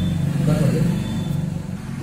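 A man's voice over a steady low hum of a motor vehicle engine running close by.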